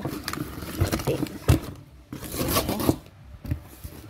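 Cardboard shipping box being opened by hand: flaps and packaging scraping and rustling, with a knock about one and a half seconds in.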